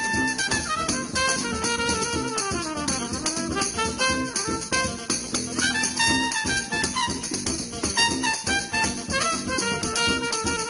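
Jazz band playing, with a trumpet carrying a melodic line over electric guitar and a steady rhythmic accompaniment.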